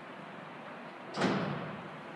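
The torsion-bar-assisted tailgate of a 2014 GMC Sierra SLT pickup is lifted and latches shut with a single thump about a second in.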